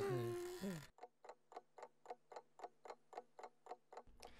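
A cartoon character's long, drawn-out yawn that trails off about a second in, then a clock ticking quickly and evenly.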